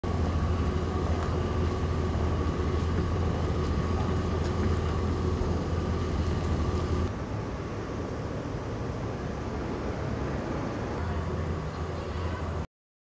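Parked Mitsubishi Fuso tour coach idling: a steady low hum with a faint steady whine above it, a little quieter from about seven seconds in.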